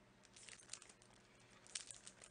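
Faint crinkling and rustling of a small pack of stick-on camera covers being handled in the fingers, with a few soft clicks about half a second in and again near the end.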